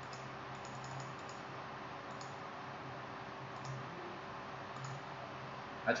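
A handful of faint, irregular clicks from a computer mouse and keyboard over a steady low hum and hiss.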